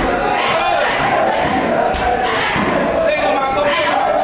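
Muay Thai pad work: kicks landing on Thai pads, with shouted voices. There are sharp impacts right at the start and about two seconds in.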